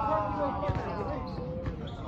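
A basketball bouncing a few times on an outdoor court, heard from a distance, under players' shouting voices. One long call falls slightly in pitch over the first second.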